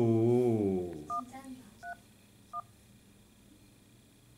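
Smartphone keypad dialing tones: three short two-note beeps about three quarters of a second apart, keying the digits 1-3-1 for the weather forecast line.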